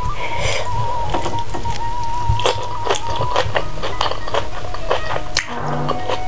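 Background music under close-up eating sounds: fingers working through rice and chicken, with many short wet clicks of chewing and mouth sounds.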